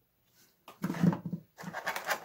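A man's short wordless vocal sound, loud and pitched, about a second in. It is followed by the crinkle of a clear plastic packaging bag being handled.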